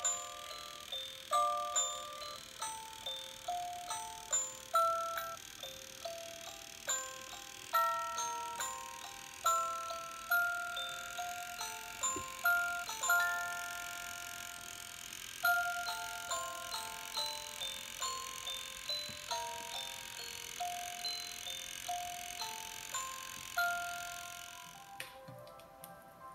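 A light-up musical Christmas village ornament playing a simple electronic chime melody, one plucked-sounding note after another, each fading quickly. The tune stops about a second before the end.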